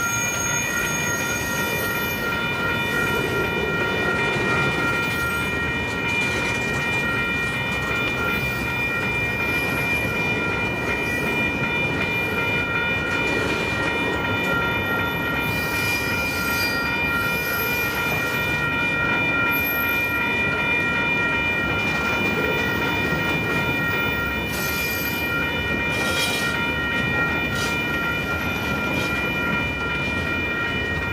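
Loaded freight cars of a long mixed train rolling slowly past on a curve: steady wheel-and-rail rumble and clatter, with a steady high-pitched squeal running throughout and a few louder rattles around halfway and near the end.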